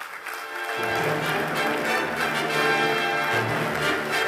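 Orchestral music with brass starts up, filling in and growing louder over the first second, then plays steadily.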